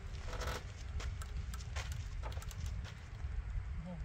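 Light, irregular clicks and knocks as a rope swing is brought to a stop and its rider gets up off the seat, over a steady low wind rumble on the microphone.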